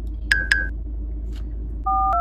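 Electronic phone beeps: two short high beeps a moment apart, then a telephone keypad (DTMF) tone starting near the end, over a steady low rumble.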